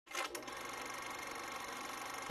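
A faint, steady mechanical whirring hum, rising in briefly just after the start and then holding even.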